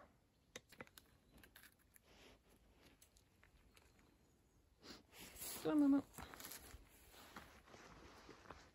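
Footsteps on a dirt forest path strewn with dry leaves and roots, with scattered crunches and scuffs, rising to a louder rustling flurry about five seconds in as the walker hurries, broken by a short "oh".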